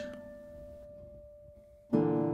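Background classical guitar music: a single held note rings and fades quietly. Just before the end a new chord is plucked and rings on.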